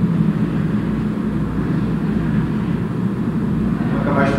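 Steady low hum and rumble of room background noise, with no speech.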